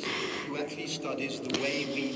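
Faint speech: a man talking in English, much quieter than the German voice-over around it.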